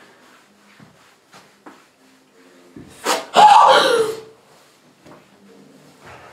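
A man's loud cry of pain, about a second long, with a pitch that rises and falls, as a wax strip is pulled from his leg. It comes about three seconds in, after a short sharp onset.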